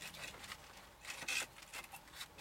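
Faint scraping and rubbing of a hand working under a raised wooden shed sill, against wood, the block foundation and roofing felt, with a few small clicks and a brief louder scrape about a second and a quarter in.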